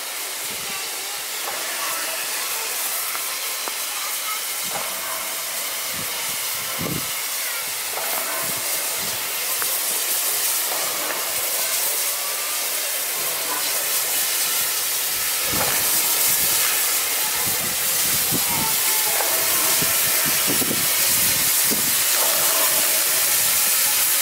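Steam locomotive Er797-86 arriving slowly, its steam hissing steadily and growing louder as it approaches, with a few low thumps from the running gear.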